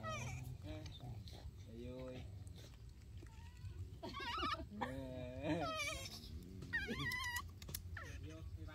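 Baby macaques calling: a series of short, high-pitched, wavering coos and squeals. The loudest and highest come about halfway through and again near the end.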